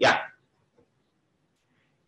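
A single short spoken "yeah" at the very start, then near silence.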